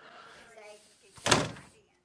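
An interior door pushed shut, with one sudden loud bang a little over a second in.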